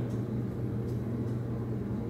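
Steady low room hum, with two faint snips of hair-cutting scissors trimming the hair ends about a second in.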